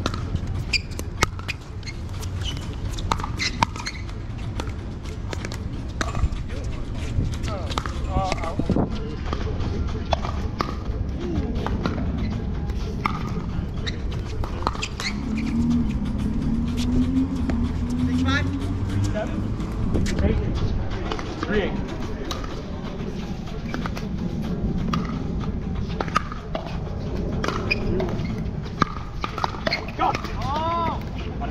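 Pickleball paddles hitting a plastic ball: sharp pops at uneven intervals throughout, some nearer and louder, others fainter from neighbouring courts, over voices in the background.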